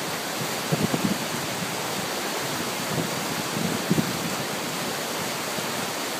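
Shallow river rapids rushing steadily over rocks.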